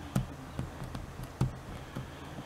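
Fingers pressing and tapping a sticker onto a cabinet door: a few soft taps, the loudest about one and a half seconds in.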